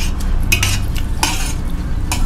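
A metal spoon scraping and clinking against a brass plate of rice, twice, about half a second and a little over a second in. A steady low hum sits underneath.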